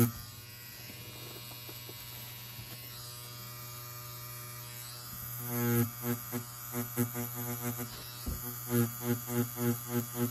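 Tattoo machine buzzing steadily. From about halfway the buzz swells and fades in quick pulses, about three a second, as the needle works shading strokes into the design.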